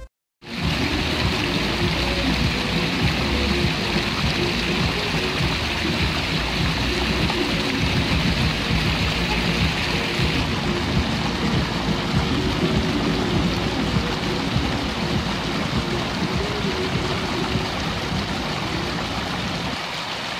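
Fountain jets splashing steadily into a water basin, a constant rushing and pattering of water that begins after a half-second of silence.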